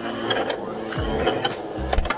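Two Beyblade X spinning tops, Cobalt Drake and Knight Shield, whirring on a plastic stadium floor and clashing, with repeated sharp clicks of metal-and-plastic hits against each other and the stadium rail.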